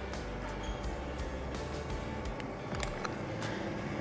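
Quiet background music with steady sustained notes, with a few faint clicks over it.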